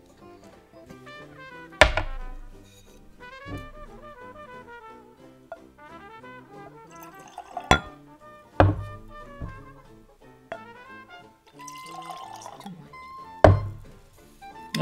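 Background music with a melody throughout. Over it, a bottle of bourbon is opened and whiskey is poured into a glass, with four sharp knocks of glass on the tabletop.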